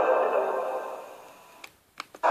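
The closing sound of a TV commercial, played back through a screen's speaker, fades away over about a second and a half. A short gap of near silence follows, broken by a couple of faint clicks near the end.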